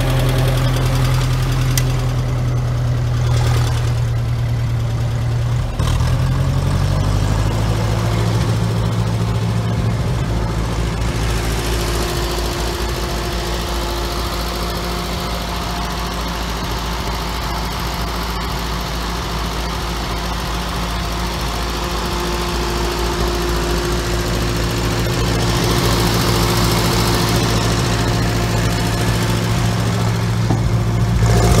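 Massey Ferguson 35's petrol/TVO engine running steadily, heard close up from the seat. Its note shifts about six seconds in as the tractor's hydraulics raise the tipping trailer.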